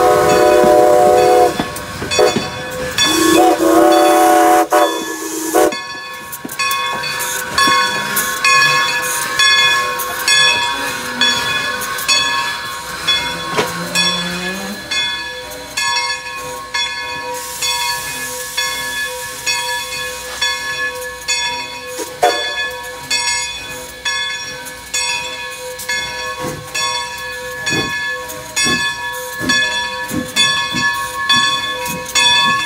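New Hope & Ivyland No. 40 steam locomotive's whistle sounded twice: a short blast, then a longer one that slides up in pitch as it opens. After that a bell rings in a steady rhythm, with steam hissing.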